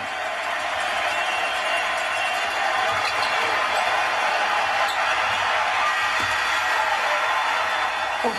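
A packed basketball arena crowd roaring steadily through the final seconds of a close game. The game horn cannot be picked out of the crowd noise.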